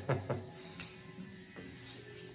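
Soft background music, with the tail of a laugh at the start and a light click a little under a second in as a plastic guard is fitted onto electric hair clippers, which are not yet running.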